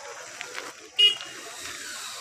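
A vehicle horn gives one short toot about a second in, over steady outdoor background noise.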